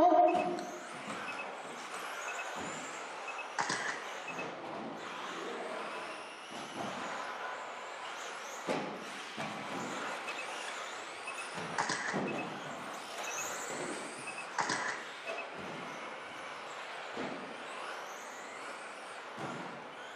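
Radio-controlled 2WD buggies racing on an indoor track: high motor whines rise and fall as they speed up and slow down, over a steady rush of tyres. Several sharp knocks come from cars landing jumps or striking the track boards.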